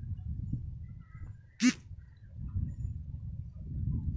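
A single short animal-like call about one and a half seconds in, over a steady low background rumble.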